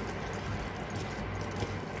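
A hand mixing raw chicken pieces with spice paste in a steel bowl: wet mixing sounds with many small clicks and light metallic jangling.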